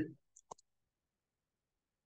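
Two quick clicks of a computer mouse button about half a second in, after the end of a spoken word.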